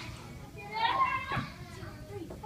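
A young child's high-pitched voice: one short call, about a second long, rising in pitch at its start and reaching its loudest near the middle, over other children's voices in the background.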